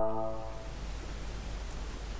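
Soft ambient intro music fading out in the first half second, leaving a steady low hiss.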